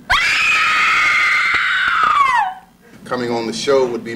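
A woman's long, high-pitched scream, held for about two and a half seconds and sliding down in pitch as it ends, followed by a short pause and then talking.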